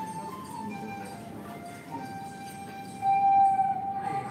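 Music playing through a smartphone's speaker turned up to its maximum volume: a melody of long held notes. The loudest held note comes about three seconds in.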